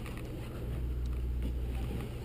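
Steady low hum of a sportfishing boat's onboard machinery, with an even hiss above it.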